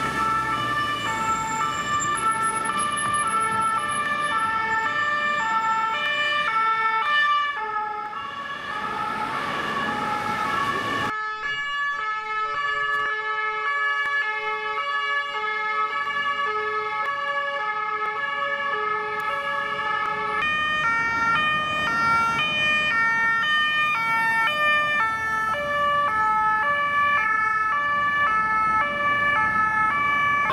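French two-tone police sirens from several police vans in convoy, each alternating between two notes, the sets overlapping out of step, over street traffic. The sound changes abruptly a few times as the shots change.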